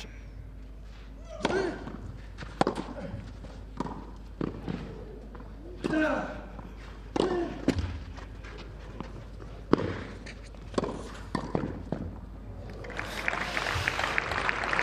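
Tennis rally on a clay court: a serve and then sharp racket-on-ball strikes every second or so, several of them with a player's short grunt. Near the end a crowd breaks into applause.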